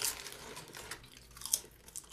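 A person eating crunchy potato chips: scattered short, sharp crunches, the clearest near the start and about one and a half seconds in.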